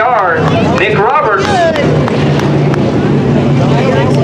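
Dirt-track modified race car engines running at low speed after the checkered flag, settling into a steady low drone about halfway through, under a loudspeaker voice at first.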